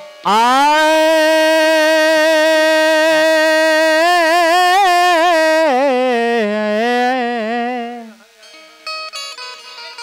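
A male folk singer's opening alaap: one long sung "aa" held steady for several seconds, then wavering in ornamented turns and stepping down in pitch before it stops about eight seconds in. Fainter short instrumental notes follow near the end.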